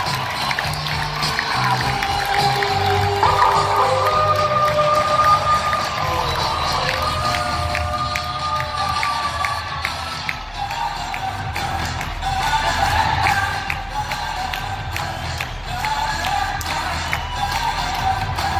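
Music played over an ice-hockey arena's sound system, with long held notes, above the steady noise of the crowd and some cheering.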